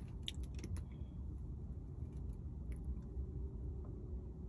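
Low steady hum of a car's interior, with a few faint clicks in the first second.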